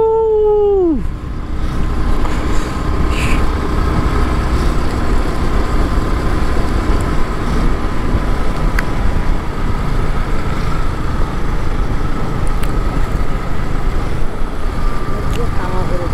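Steady rush of wind and road noise from a motorcycle riding at speed, heavy in the low end and loud throughout. It opens with a drawn-out human voice that drops in pitch and fades about a second in.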